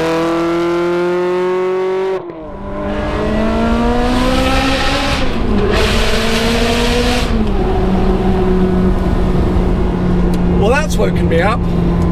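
Ferrari 360's V8 engine accelerating: it revs up as the car pulls away, then, heard from inside the cabin, climbs through the gears with a shift about five seconds in before settling to a steady cruise. A man's voice sounds briefly near the end.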